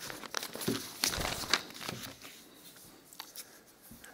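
Irregular paper rustling and crinkling with small clicks and knocks, close to a microphone, busiest in the first half.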